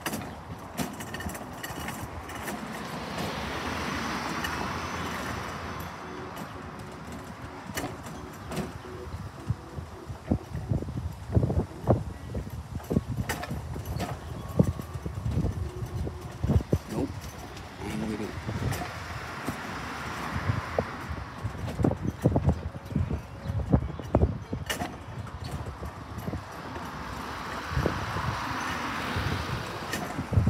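Cars passing on the street, three times a rush of tyre and engine noise swelling up and fading away, with footsteps and scattered sharp knocks in between, heaviest in the middle of the stretch.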